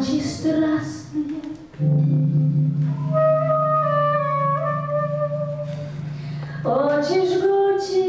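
Live band playing a slow song: a sustained low drone under a slow, gliding melody line that is sung, with a rising slide into notes near the start and again near the end.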